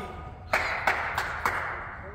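A football bouncing on the hall floor: four quick echoing thuds, each gap a little shorter than the one before.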